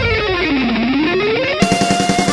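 Heavy metal music led by electric guitar: a single note slides down in pitch and back up again. About a second and a half in, a held note starts over fast, chugging low strokes.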